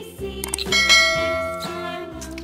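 A short click, then a bell chime that rings out about two-thirds of a second in and slowly fades, over a children's song backing track.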